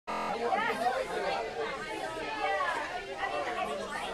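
Several teenagers' voices talking and chattering over one another at once.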